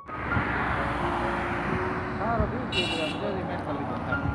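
Steady road and traffic noise, with faint voices and a brief high-pitched tone a little before three seconds in.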